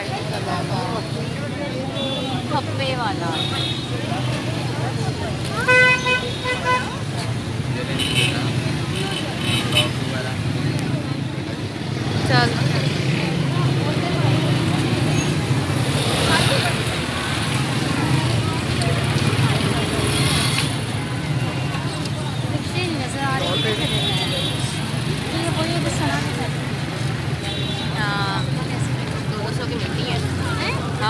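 Busy street crowd: many voices chattering over a steady low hum of traffic, with vehicle horns honking several times, the loudest honk about six seconds in.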